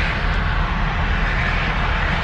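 Steady road and traffic noise inside a moving pickup truck with the side window open: a constant low rumble with an even rush over it.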